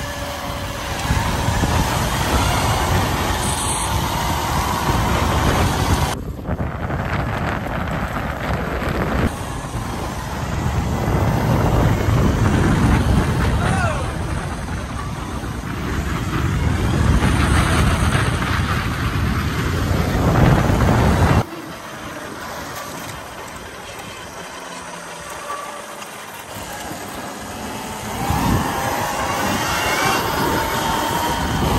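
Altis Sigma 96-volt electric dirt bike riding along a road under throttle, a faint motor whine under heavy wind and road noise. The sound changes abruptly about six seconds in and drops sharply in level about twenty-one seconds in.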